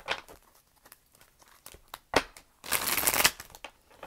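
Tarot cards being shuffled by hand: soft card clicks, a sharp snap about two seconds in, then a brief burst of shuffling about half a second long near the end.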